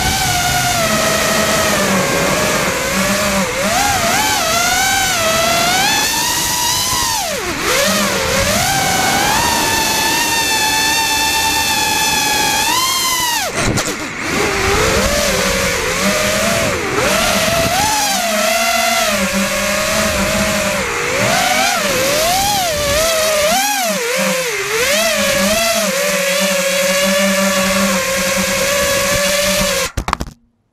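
FPV quadcopter's brushless motors and propellers on FETtec Alpha ESCs, whining in flight with the pitch rising and falling constantly with the throttle. The whine drops sharply on throttle cuts about seven, thirteen and twenty-four seconds in, then climbs again.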